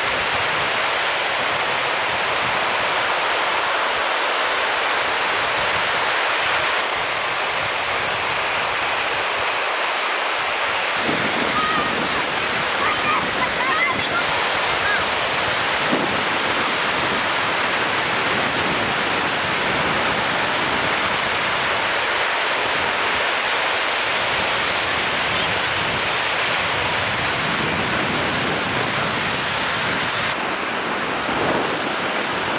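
Surf breaking on a beach: a steady rushing noise of waves and white water, with more low rumble from about eleven seconds in.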